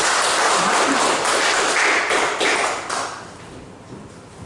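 Applause from the audience, dying away about three seconds in.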